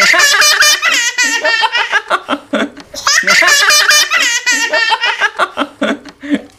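Children's high-pitched laughter, joined by others, in two long fits: one at the start and another about three seconds in.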